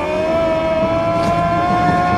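An engine running at high revs, one steady pitch that creeps slowly upward over a rough, noisy bed.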